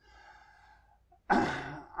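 A man lets out a loud sigh, a sudden open-mouthed exhale about a second in that trails off, after a second of quiet room tone.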